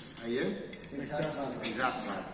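A metal rod tapping against the metal parts of a dismantled diesel pumpset engine: three sharp clinks about half a second apart.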